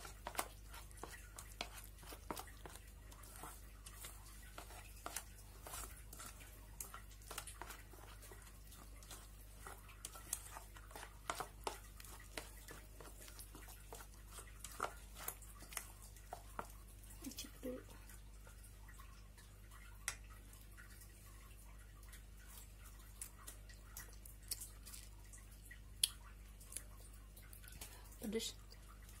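Melamine spoon stirring thick kimchi chili paste in a stainless steel saucepan: faint, irregular clicks and squelches of the spoon against the pan, thinning out in the second half.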